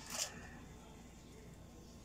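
A brief rustle just after the start, then quiet, steady room hum.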